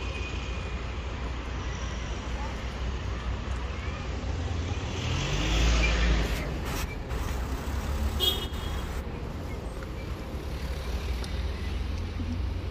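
Street traffic: a steady low rumble of cars on the road, with one vehicle passing close about five seconds in, its engine note rising as it gets louder. A brief high tone sounds about eight seconds in.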